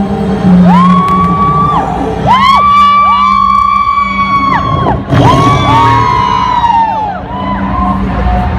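Performance music with a steady low drone, over which several long, wolf-like howls overlap, each sliding up, holding and falling away, about five of them in all.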